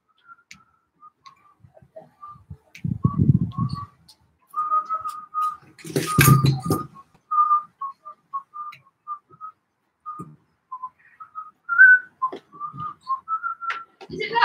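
A person whistling a simple tune in short notes, mostly around one pitch with small steps up and down. Two dull bumps come through it, one about three seconds in and another about six seconds in.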